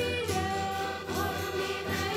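Traditional Portuguese Reis carol sung by a mixed children's and adults' folk choir, accompanied by button accordions holding long notes, with a bass drum and strummed guitars beneath.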